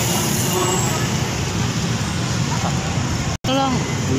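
Steady street traffic noise, vehicle engines running, with faint voices in the background. The sound cuts out for an instant near the end.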